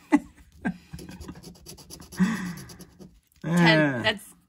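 Coin scratching the latex coating off a paper scratch-off lottery ticket, in a run of quick scraping strokes, with a short burst of voice near the end.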